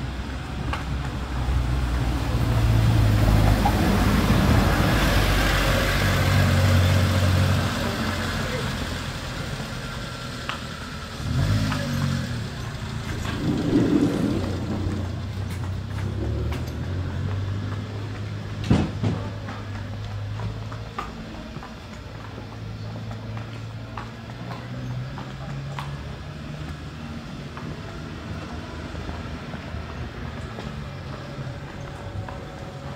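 Street sound: a motor vehicle running, loudest in the first several seconds as it passes, with people's voices in the background.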